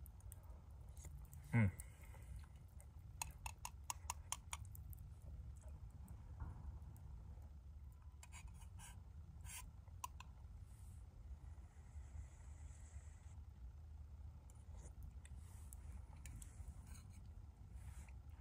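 A metal spoon clicking and scraping against a Pathfinder stainless steel camp cup while eating, in three short runs of light clicks, over a low steady rumble. A man's brief "mm" comes near the start.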